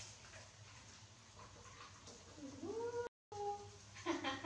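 A young macaque cries out once, a short rising whimper past halfway that breaks off abruptly, followed by a brief second note; the first half is quiet.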